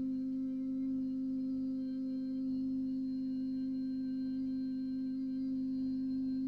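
A man humming one long steady note on middle C with his lips closed, a single-vowel "mm" hum used as a vocal warm-up.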